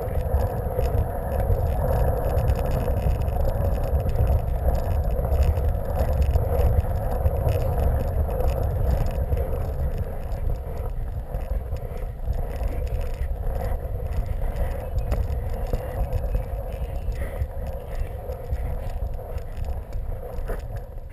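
PlasmaCar ride-on toy rolling continuously across the floor on its plastic wheels as it is steered along: a steady rolling rumble, a little quieter near the end.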